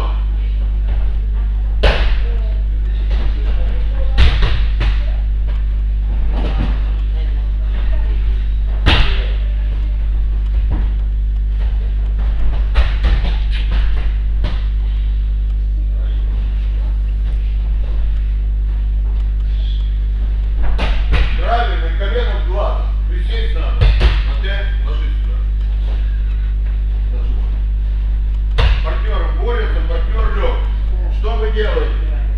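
Bodies thudding onto gym mats during throw-and-fall drills, several scattered thuds over a steady low hum, with brief snatches of talk.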